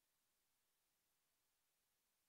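Near silence: only a faint, even hiss of the recording's noise floor.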